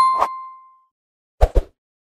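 Subscribe-animation sound effects: a bell-like ding rings out and fades within the first second, with a couple of short clicks near the start. Two quick low pops follow about a second and a half in.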